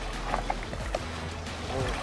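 Water sloshing and splashing as a big snook is handled and lifted at the side of a boat, with background music under it.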